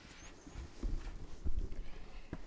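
A handful of dull knocks and bumps: handling noise of objects moved about on a table close to the microphone.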